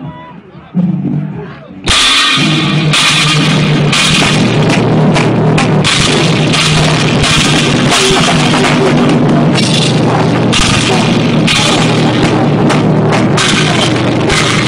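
Live heavy rock band (distorted electric guitars, bass and a drum kit with cymbals) crashing in together about two seconds in after a short quieter lead-in with a single low note, then playing loud and dense. Recorded on an old phone, so the sound is harsh and compressed.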